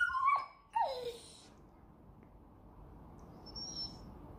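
Staffordshire bull terrier whining: a few short high whines in the first second, the last one sliding down in pitch.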